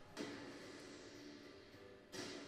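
Faint music, played quietly.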